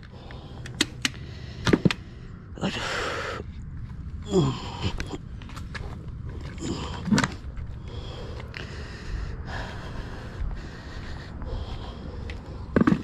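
Scattered footsteps and knocks on a concrete roof, with a person's heavy breaths and short grunts, over a steady low rumble of wind on the microphone.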